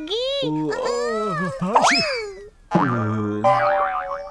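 Cartoon soundtrack of wordless character vocalisations, a high chirpy voice and a deeper voice, with a comic sound effect: a quick rising glide about two seconds in, as the little bird is thrown off the sleeping bear.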